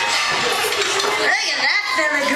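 Voices calling out over the clink of dishes and cutlery from diners at their tables.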